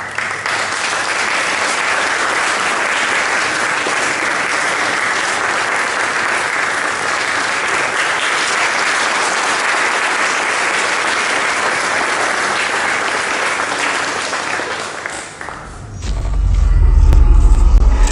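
Audience applauding steadily for about fifteen seconds. Near the end the applause gives way to a short, loud, deep rumble.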